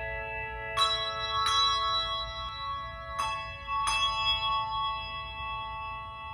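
Handbell choir ringing chords: four chords struck in the first four seconds, about three-quarters of a second apart in pairs, the last one left to ring on and slowly fade.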